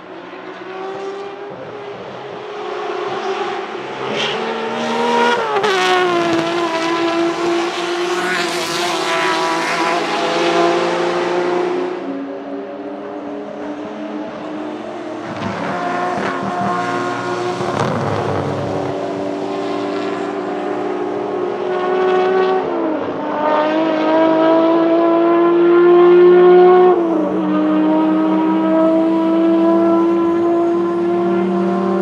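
BMW 3.0 CSL Group 2 race cars' 3.2-litre straight-six engines revving hard on track, mixed with other historic touring cars. The engine pitch climbs through each gear and drops sharply at the upshifts, twice in the last several seconds, with the loudest moment just before the final shift.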